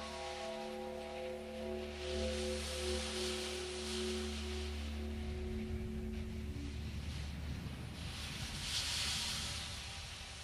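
Ambient music: several held, ringing tones that fade out about halfway through, over a steady low drone and a wash of hiss that swells and ebbs.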